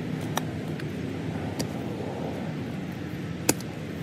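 Steady rumble of road traffic, with three sharp clicks of a shovel blade chopping into sod, the loudest about three and a half seconds in.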